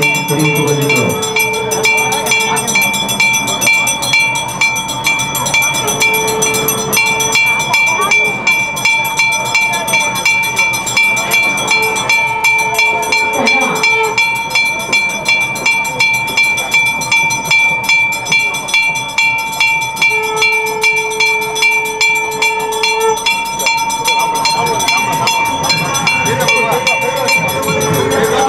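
Temple bells ringing continuously in a fast, even beat during an aarti. A long steady tone sounds four times over the bells, for one to three seconds each time.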